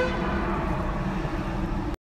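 Fire engine running with a steady low rumble, with faint held tones from its warning siren over the traffic noise.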